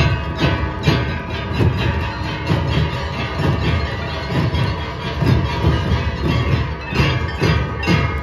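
A band of dhols, double-headed barrel drums, beaten together by many players in a loud, steady, driving rhythm of repeated strokes.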